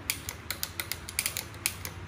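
Handlebar trigger gear shifter on a bicycle being clicked through its gears: a quick, uneven run of about a dozen sharp plastic-and-metal clicks, with the shifter working normally.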